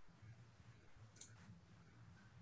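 Near silence: faint room tone with a low hum, and a single faint click a little over a second in.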